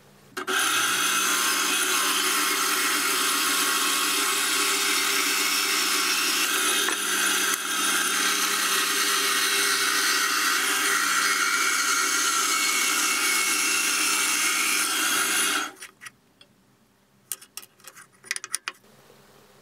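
Bandsaw running and ripping strips off a hardwood block: a steady sawing hiss over the machine's hum. It starts about half a second in, cuts off sharply about three-quarters of the way through, and a few light clicks follow near the end.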